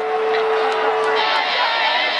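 Live punk concert crowd noise with a steady held tone from the stage amplification that cuts off a little over halfway through, after which a brighter, even wash of noise takes over.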